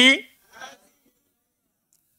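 A man's voice, picked up by a close headset microphone, finishes a word at the start, followed by a brief faint murmur about half a second in, then near silence.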